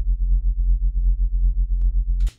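A bass line holding one low note, its volume pumping rhythmically several times a second under the Flux Mini plugin's amplitude modulation (the Fakechain 2 preset), which imitates a bass sidechain-compressed to a kick.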